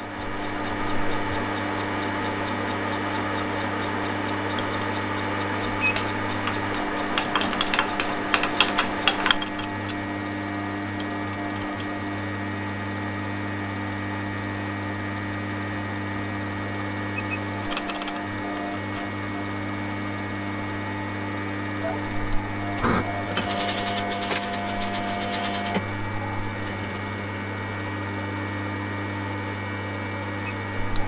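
Milling machine running steadily as its end mill cuts a flat on a model-engine piston, a constant motor hum with clusters of rapid clicks about a third of the way in and again near the end.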